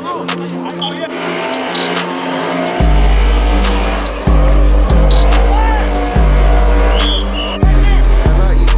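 Hip-hop music track with vocals. Deep bass notes drop in about three seconds in and come back every second or so.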